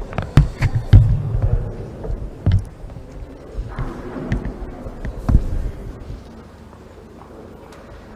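Thumps and knocks on the lectern microphones as a laptop is set down and handled on the podium, a quick cluster in the first second and a half, then single knocks about two and a half and five seconds in.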